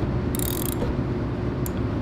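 Hand ratchet clicking in two short bursts as it turns the seized crankshaft of a 196cc Honda-clone engine, slowly freeing a rust-stuck piston, over a steady low hum.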